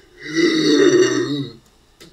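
A person's voice making a single drawn-out, low, rough vocal noise lasting about a second, a voiced sound effect for a character fainting from shock.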